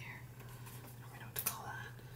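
Quiet room tone with a steady low hum, soft breathy sounds, and a small click about one and a half seconds in.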